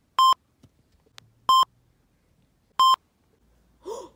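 Three short, loud electronic beeps, all at the same pitch, evenly spaced about a second and a third apart.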